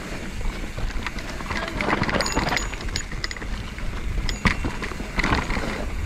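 A mountain bike, a 2019 YT Capra, rolling fast down a dirt singletrack: tyres on dirt and roots with the chain and frame rattling in sharp clicks and knocks over the bumps. Wind rumbles on the helmet camera's microphone throughout.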